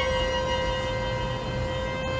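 Solo violin holding one long, steady bowed note in a contemporary unaccompanied violin piece.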